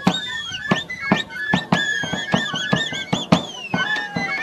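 Live Uyghur traditional street music: a shrill double-reed shawm (sunay) plays a bending, gliding melody over rapid, insistent strokes on nagra drums.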